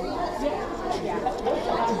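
Indistinct background chatter of several people talking at once in a room, with no single voice standing out.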